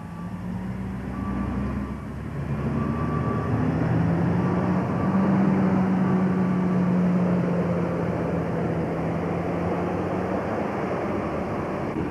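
Heavy diesel earth-moving plant, big motor scrapers and a crawler tractor, running at work: a steady engine drone that grows louder over the first few seconds.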